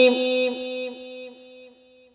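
A Quran reciter's voice holding the last drawn-out note of a chanted verse on one steady pitch, fading away to near silence over about two seconds.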